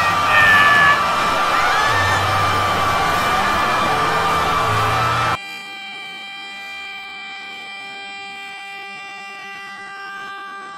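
A cartoon voice shouting and screaming, digitally distorted and very loud. About five seconds in it cuts off suddenly and gives way to a quieter, steady held drone of several pitches.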